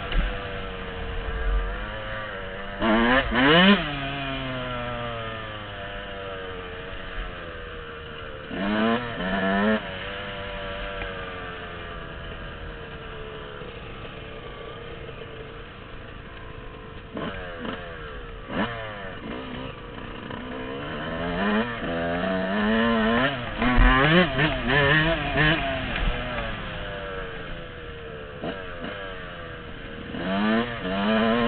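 Yamaha dirt bike engine heard from the rider's helmet, revving up through the gears in repeated bursts of throttle, the pitch rising on each pull and dropping back as the throttle is closed or a gear is shifted. The hardest acceleration comes about three-quarters of the way through.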